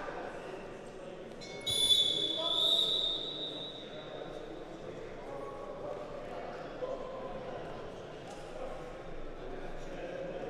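A loud, shrill, high-pitched signal tone cuts in about two seconds in, holds for about a second and a half and fades over the next two seconds in the echo of a large sports hall, over steady background chatter.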